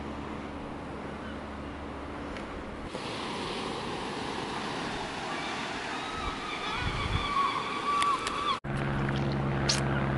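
Wind and the wash of surf heard from a clifftop above the sea, a steady rushing noise. It changes abruptly about three seconds in, breaks off sharply near the end, and then a steady low hum starts.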